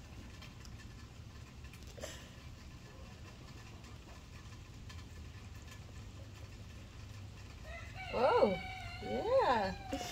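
Low background noise with a faint knock about two seconds in, then near the end two short pitched calls, each rising and then falling in pitch.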